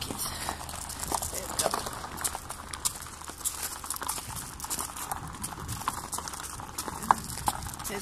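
Hooves of a horse being led at a walk, stepping off grass onto a tarmac road: an irregular run of sharp clip-clops.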